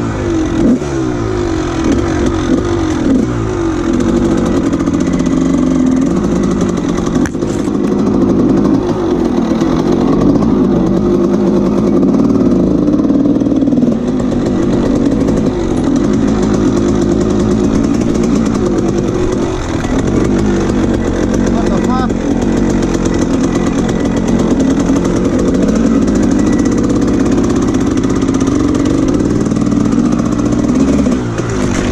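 Dirt bike engine running close to the camera, its revs rising and falling continuously as the bike picks its way along a rocky trail.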